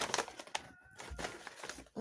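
A mailed package being opened by hand: paper or plastic crinkling and rustling, with a few sharp crackles at the start.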